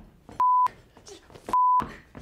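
Two short censor bleeps, each a steady high tone about a quarter of a second long that starts and stops abruptly, masking a man's swearing. Traces of his laughing and shouting voice are heard between them.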